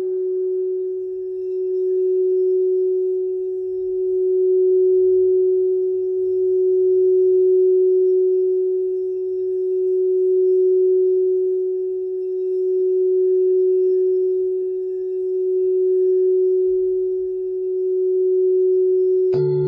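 Tibetan singing bowl sounding one long, steady low tone with a faint higher overtone, its loudness swelling and fading slowly about every three seconds.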